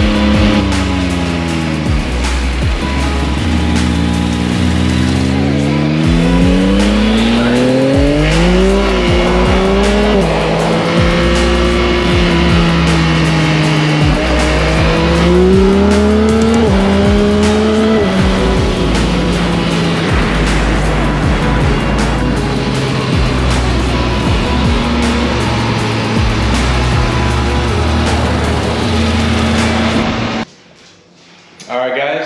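Yamaha XSR900's inline three-cylinder engine pulling hard through the gears: its pitch climbs and drops back at each upshift, twice in the first half, then settles into a steady cruise. Music with a steady bass line runs underneath.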